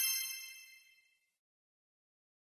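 Bright bell-like ding sound effect marking the reveal of the correct quiz answer as the countdown runs out, ringing out and fading away within about a second, then silence.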